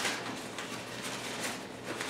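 A piece of painted brown paper being crumpled by hand: a run of soft, irregular crinkling rustles.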